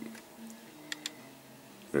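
Light clicks, twice in quick succession about a second in, from a small die-cast model car being handled and turned over, over a faint low hum in a quiet room.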